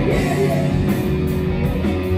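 A live rock band playing loud: electric guitar, bass guitar and drum kit together.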